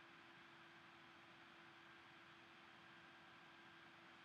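Near silence: a faint steady hiss with a low, even hum.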